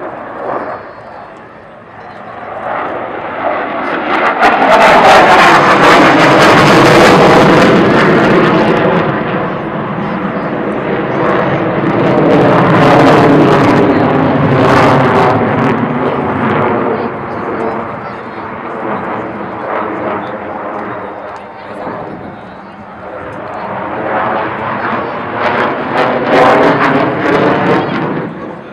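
Sukhoi Su-30MKI fighter jet's twin turbofan engines during a display routine. The engine noise swells to its loudest about four to nine seconds in, eases, surges again around thirteen seconds and once more near the end, with a sweeping, wavering tone as the jet passes and turns.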